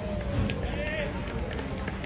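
Distant, unclear shouting and calls from rugby players on the field, over steady outdoor background noise.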